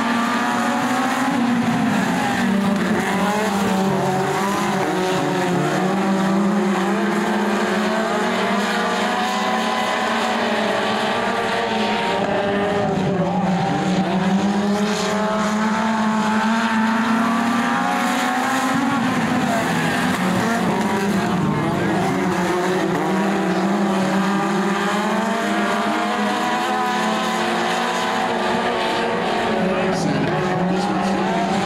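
A pack of four-cylinder dirt-track race cars running laps, several engines at once, their pitch rising and falling together as they lift through the turns and accelerate down the straights.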